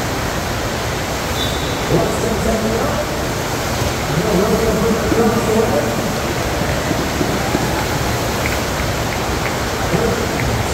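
Steady rushing of water from a double-jet FlowRider sheet-wave machine: a thin sheet of water pumped at speed up the ride surface. Voices in the background.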